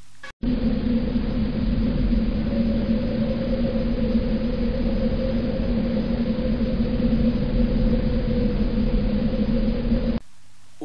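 A steady, even rumbling noise with a low hum running through it. It starts abruptly just after a brief cut to silence and holds unchanged.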